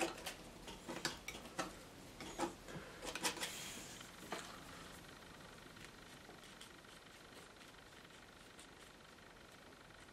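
Palette knife clicking and scraping as oil paint is picked up and laid onto the board, a scatter of small knocks and scrapes over the first four seconds or so, then faint steady room tone.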